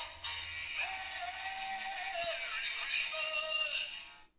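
Battery-powered singing and dancing Santa hat playing a Christmas song through its small built-in speaker: a synthetic-sounding male vocal over backing music, thin, with almost no bass.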